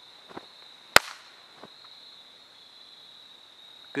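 Crickets trilling steadily in a high, even tone, with one sharp click about a second in and a couple of fainter ticks.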